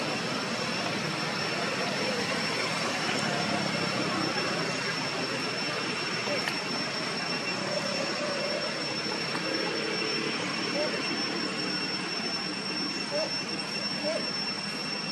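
Steady outdoor background noise with a high, even whine running through it, and faint distant voices.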